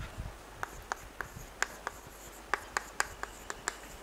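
Chalk writing on a blackboard: a run of sharp, irregular taps and clicks as the letters are formed, starting about half a second in.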